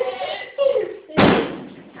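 A hard bang on a wooden toilet cubicle door about a second in, from people trapped inside trying to get out.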